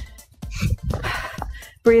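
Background music under a woman's hard breathing and soft thuds of feet on an exercise mat during a cardio interval, with the spoken word "breathe" at the very end.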